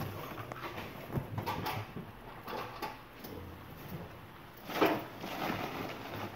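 Hands rummaging through a cardboard box: rustling of crumpled packing paper and scraping against the cardboard, with a few light knocks and one louder rustle about five seconds in.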